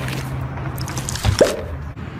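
A single drip-like bloop about one and a half seconds in, a quick upward glide in pitch, over a steady low hum.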